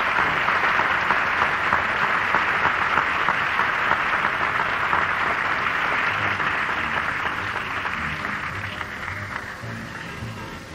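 A theatre audience applauding in a big, steady round that tapers off over the last few seconds.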